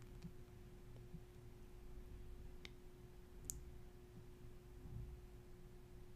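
Near-silent room tone with a faint steady hum, broken by two faint sharp clicks about two and a half and three and a half seconds in, the second the louder.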